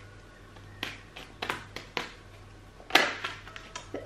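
A deck of tarot cards being shuffled by hand: a string of short, sharp card snaps and taps, the loudest about three seconds in.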